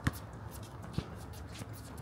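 A basketball being dribbled on an outdoor hard court, three bounces about a second apart, with sneakers scuffing on the surface as players run.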